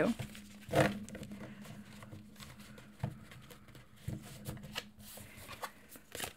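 Tarot cards being shuffled by hand: soft rustling of the deck with a few light clicks and taps of cards, over a faint steady hum.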